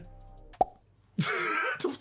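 Editing sound effects: a single short pop about half a second in, then after a brief silence a loud noisy burst lasting about half a second.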